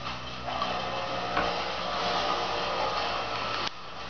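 A machine running steadily with a whirring hum. It comes in about half a second in and cuts off suddenly near the end.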